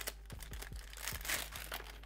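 Thin plastic packaging sleeve crinkling softly as a clear phone case is slid out of it, with faint scattered clicks.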